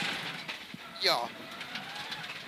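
Mitsubishi Lancer Evolution X rally car's turbocharged four-cylinder engine running and gravel road noise, heard from inside the cabin at stage speed, with a short word from the co-driver about a second in.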